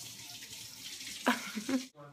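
Kitchen tap running into the sink: a steady hiss of water that breaks off abruptly just before the end.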